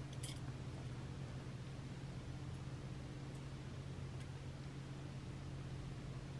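Quiet room tone with a steady low hum, broken by a few faint clicks of small jewellery pliers working a thin ball head pin into a wrapped loop. The clicks are brief and spaced apart, with a couple close together right at the start.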